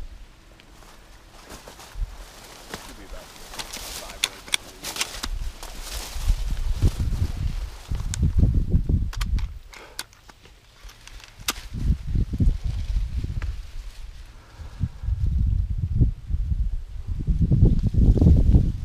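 Footsteps and dry sorghum and corn stalks brushing and crackling against a person pushing through a field. It comes in stretches, with bursts of low rumble on the microphone and a few sharp snaps.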